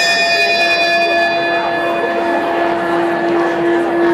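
A bell-like chime struck once and left ringing, its higher overtones fading while its low tone holds. It sounds as the countdown timer runs out, signalling that the time for the audience's discussion is up. Murmured conversation continues underneath.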